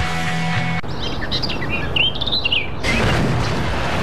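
Birds chirping in short rising and falling calls over a steady outdoor hiss, after a music cue cuts off about a second in. A broader rushing noise with a low rumble comes in about three seconds in.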